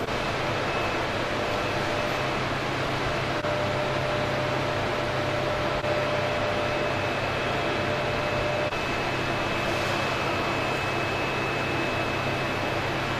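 Running machinery in a hydroelectric power station's turbine hall: a steady hum and rushing noise, with faint steady whines that come and go.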